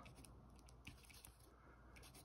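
Very faint scratching of a Pentel Orenz AT mechanical pencil's lead writing on paper.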